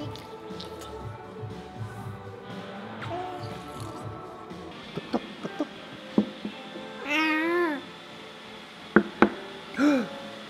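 Background music for about the first half, then a few sharp taps and an infant's high squeal about seven seconds in, rising and falling in pitch, with a shorter vocal sound near the end.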